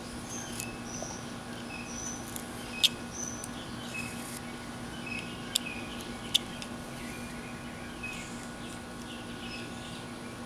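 Carving knife whittling a small wooden figure by hand, with a few sharp clicks as the blade snaps through the wood: the loudest about three seconds in, two more around the middle. Short high bird chirps come and go throughout over a steady low hum.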